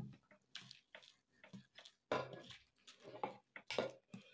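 A spoon stirring wet oats and chia seeds in a bowl: faint scattered clicks and light scrapes against the bowl, with two slightly louder scrapes, one about two seconds in and one near the end.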